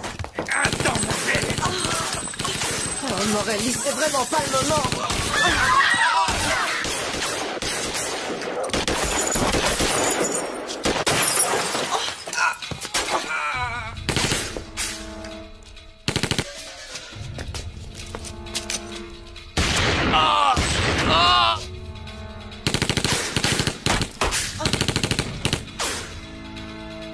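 Film action soundtrack: rapid gunfire with people shouting over dramatic music. About halfway through the shooting thins out, leaving the music with a few loud cries.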